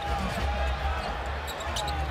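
Basketball being dribbled on a hardwood arena court, over a steady low rumble of arena noise.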